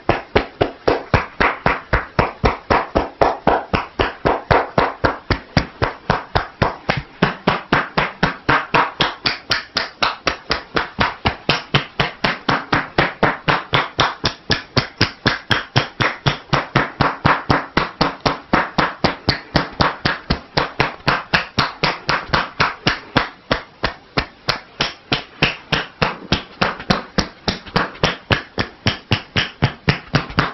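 Percussion massage (tapotement): the therapist's hands strike the seated client's towel-covered shoulders and neck in a fast, steady rhythm of about three strikes a second.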